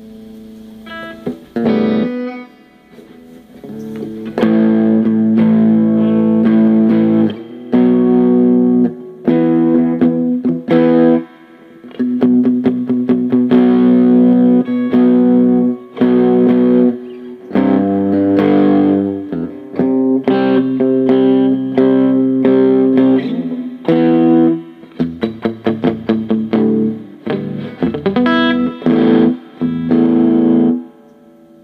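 Electric guitar played on its bridge pickup through a Gorilla GG-110 solid-state combo amplifier: strummed chords held for a second or two each, with short stops between them, and quicker choppy strums near the end.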